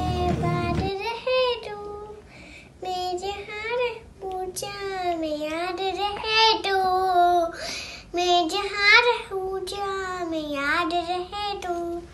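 Young girl singing a Hindi patriotic song solo, without accompaniment, in held, wavering phrases with short breaks for breath.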